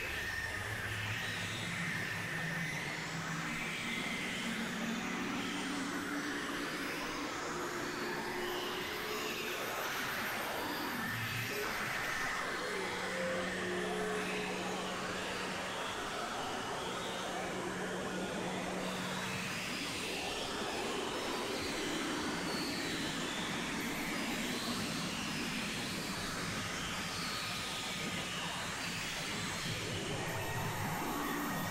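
Experimental synthesizer drone music from a Novation Supernova II and Korg microKorg XL: a steady, dense noisy wash with low held tones that fade in and out, and a few short higher tones around the middle.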